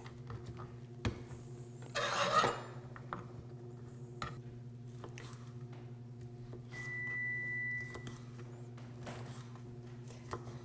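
Chef's knife knocking on a plastic cutting board while a jalapeño is finely chopped: a few sharp, irregularly spaced knocks over a steady electrical hum. A short burst of noise comes about two seconds in, and a thin steady high tone sounds for about a second past the middle.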